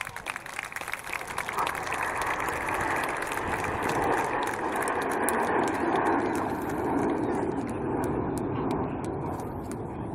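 Formation of Red Arrows BAE Hawk T1 jets passing by, a rushing jet noise that swells to a peak around the middle and slowly fades.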